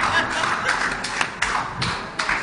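A handful of sharp taps at irregular intervals, about five in two seconds.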